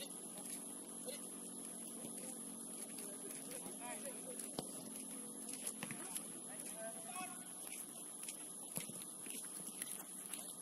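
Open-air ambience of an amateur football match on artificial turf: distant players' shouts and a few sharp thuds of the ball being kicked, over a steady electrical hum with a high whine.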